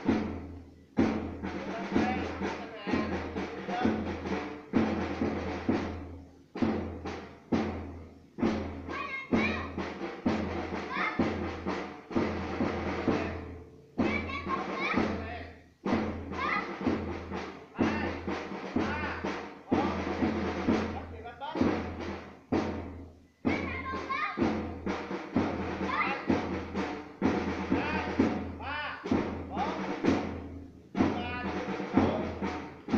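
A drum beating a steady marching rhythm, about one stroke a second, with voices over it.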